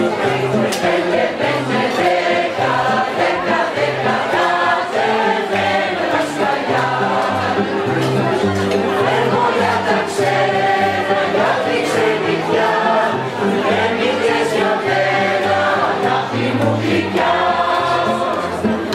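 Mixed choir of men's and women's voices singing in parts, accompanied by an acoustic guitar.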